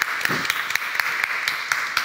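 Audience applauding: many scattered hand claps at once.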